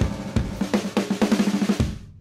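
Recorded band music: a drum kit fill on snare and bass drum, the hits coming faster into a roll that cuts off suddenly near the end.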